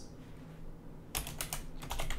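Typing on a computer keyboard: a quick run of keystrokes starting about a second in, as a formula is entered.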